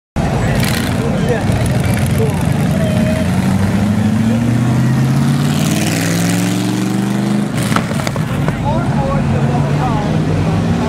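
A car engine revving up as the car accelerates past, its pitch climbing for several seconds and then dropping sharply about seven and a half seconds in, with a couple of sharp cracks at that point. Crowd voices and shouts run alongside.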